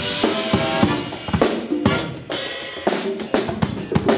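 A drum kit played hard and busy, with dense snare, kick and cymbal hits, while the rest of the funk band plays pitched notes underneath.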